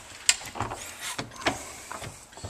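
About four short knocks and clunks, spread over two seconds, from a person climbing about aboard a fibreglass boat and handling its fittings on the way into the cabin.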